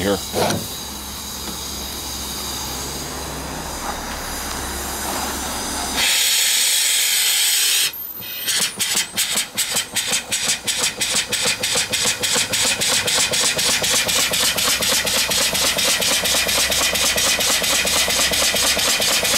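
A homebuilt vertical live steam engine being shifted into reverse while under steam. A steady running noise gives way to a loud hiss of steam for about two seconds. After a brief dip, the engine's exhaust picks up a fast, even chuffing as it runs the other way.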